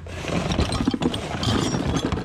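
Small rusty steel scrap parts clattering and scraping against each other and the bin's plastic lid as they are rummaged through and handled.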